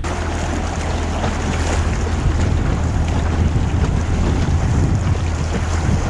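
Steady wind buffeting the microphone and water rushing past an inflatable boat under way, with a constant low rumble beneath.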